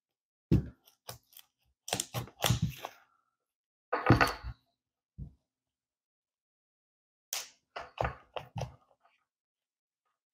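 Bursts of sharp crackling and clicking as a plastic tool is worked around the edge of a cured fiberglass layup. This is the aluminum tape underneath starting to release from the part, not the fiberglass cracking. The loudest burst comes about four seconds in.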